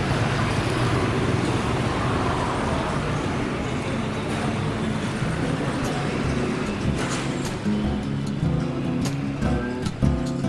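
Street traffic noise, a steady rushing haze. About eight seconds in, music with guitar comes in over it.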